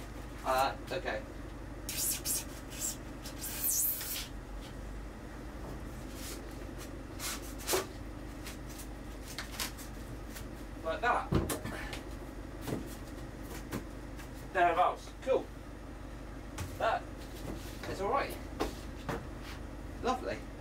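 Knocks, scrapes and a few short squeaks as a thin strip of insulation is pressed into place along the edge of a van's ribbed steel cargo floor, with one heavier thud partway through.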